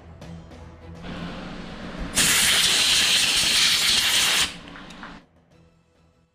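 A loud, steady hiss that cuts in sharply about two seconds in and stops abruptly about two and a half seconds later, over background music.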